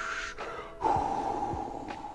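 A person making a whooshing, blowing sound with the mouth to imitate wind streaming over a motorcycle helmet: a short hiss, then a longer blow from about a second in.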